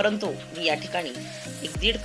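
Granulated sugar poured from a plastic measuring cup onto grated fresh coconut in a steel bowl, a short granular hiss, over background music.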